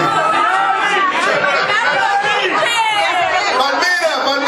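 Several people talking at once in a loud, crowded club, with live band music underneath.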